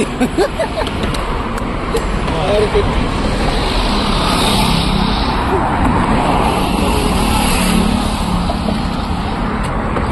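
Expressway traffic going by close at hand: a steady rush of tyre and engine noise from passing vehicles, swelling in the middle.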